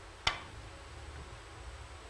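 Cue tip striking the cue ball on a three-cushion carom billiards table: one sharp click about a quarter second in, the stroke of a two-bank shot, then only faint room noise as the ball runs.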